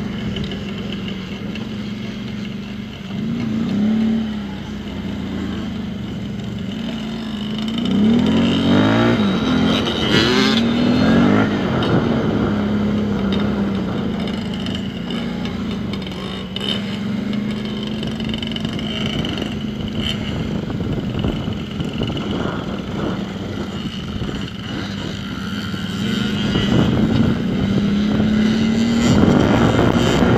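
Dirt bike engine running steadily, heard from on board, revving up with rising pitch a few times: briefly about four seconds in, repeatedly between about eight and twelve seconds, and again near the end.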